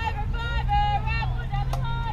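Several high-pitched girls' voices chanting a softball cheer in long, drawn-out syllables, over a steady low rumble. A single sharp smack sounds near the end.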